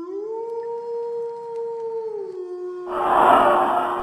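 A long howl-like wail that rises at the start, holds one pitch, then sinks a little about two seconds in. Near the end a louder hissing whoosh breaks in over it.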